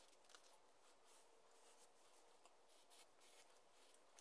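Near silence, with faint scratching and ticking of a pen-style craft knife blade cutting through a paper template.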